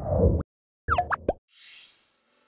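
Animated logo sound effects: a deep hit, then a quick cluster of short rising chirps about a second in, and a bright, shimmering swish that rises in pitch near the end.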